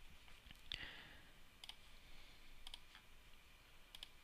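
A few faint computer mouse clicks, some in quick pairs, over near silence.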